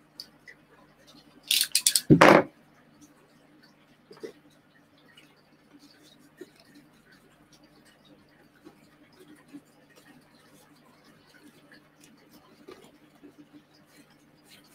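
Hands and a long tool working moss and plant offcuts into a small glass terrarium: faint scattered taps and rustles, after a loud rustle and bump lasting about a second near the start.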